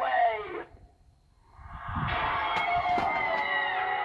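Halloween animatronic's sound track: a short eerie vocal sound, a brief pause, then about a second and a half in a swelling spooky music-and-shriek effect as the ghost-girl figure rises up.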